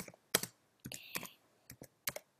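Typing on a computer keyboard: a quick, uneven run of separate key clicks, several a second.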